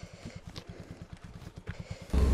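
Small scooter engine idling: a faint, even low putter of about a dozen beats a second, with one sharp click right at the start.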